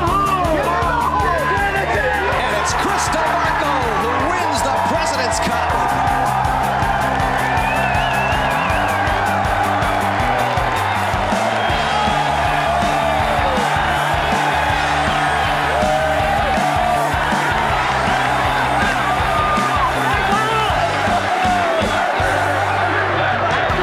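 Gallery of golf spectators erupting all at once into loud cheering, whoops and yells that go on throughout, over a background music track with a steady bass line.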